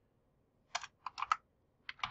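Computer keyboard keys being typed: a short run of about half a dozen sharp keystrokes, beginning under a second in and coming in two small clusters.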